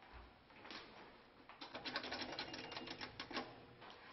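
Paper crackling and rustling as a manila envelope is handled and a sheet of paper is drawn out: a dense run of quick, crisp crackles for about two seconds in the middle.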